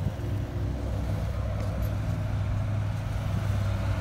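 Diesel engine of heavy construction equipment running steadily, a low even hum.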